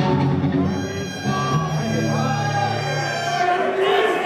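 Rock band playing live through stage amplifiers: a low held chord from guitars rings out for about two seconds, with a man's voice on the microphone and crowd noise around it.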